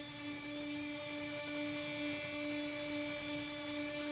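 A steady electronic hum: one low tone with a ladder of fainter overtones above it, wavering slightly but unbroken.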